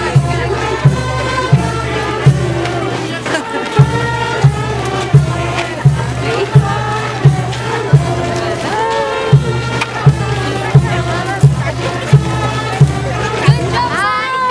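Procession crowd singing a hymn together, over a steady drum beat of about three beats every two seconds.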